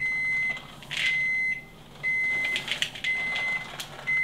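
An electric oven's preheat signal beeping: a single-pitch beep about half a second long, repeating about once a second, four times. It signals that the oven has reached its set temperature.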